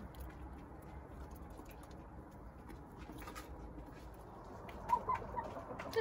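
Hens feeding, with soft low murmuring, light pecking clicks and a few short clucks about five seconds in.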